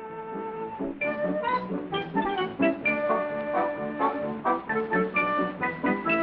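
Orchestral film-score music led by brass, playing a busy run of short notes.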